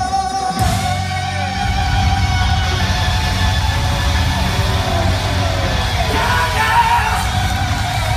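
Live rock band playing loudly in a concert hall: electric guitar with gliding pitch bends over bass guitar and drums, with a male singer's voice.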